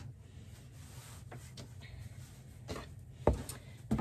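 Cotton fabric being folded and handled by hand on a cutting mat, with faint soft rustles and light taps, then a single sharp thump on the table about three seconds in as the board-wrapped fabric is picked up.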